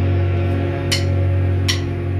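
An emocrust band playing live: electric guitar and bass holding a sustained, ringing low chord, with cymbal hits about a second in and again near the end.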